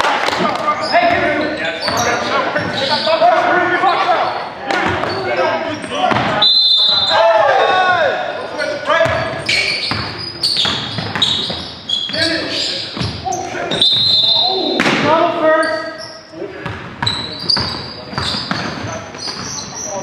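Basketball game sounds in an echoing gym: players' shouts and calls over the thud of a basketball being dribbled on a hardwood floor. Two short high squeaks come about a third of the way in and again past halfway.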